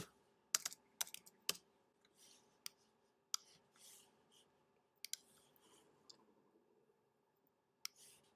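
Quiet, scattered clicks of a computer mouse and keyboard, a quick run of them in the first second and a half and a few more spread through the rest, with faint soft rustles between.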